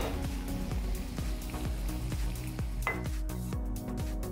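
Masala vadas deep-frying in hot oil, a steady sizzle, under background music whose beat grows plainer near the end.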